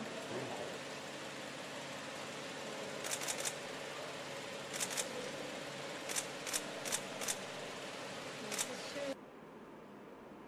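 A string of sharp clicks in small groups, about ten in all, over a steady hiss and low hum. Everything drops away suddenly near the end.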